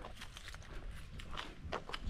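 Footsteps on a concrete driveway: a few light, irregular taps and scuffs.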